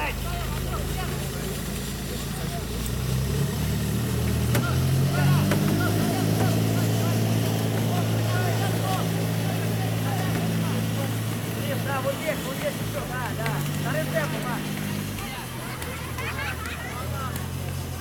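A motor engine hums low and steadily. Its pitch steps up about three to five seconds in, holds, then drops back near the end. Distant shouting voices can be heard over it.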